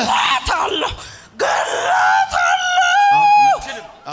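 A woman's long, high scream held on one pitch for over a second, cutting off abruptly, during a deliverance prayer.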